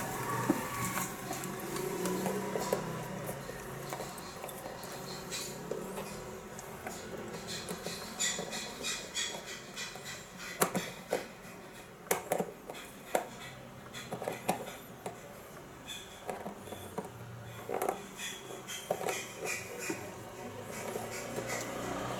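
Scattered light clicks and knocks of hands handling wiring and connectors among the plastic and metal parts inside a scooter's front section, busiest in the second half.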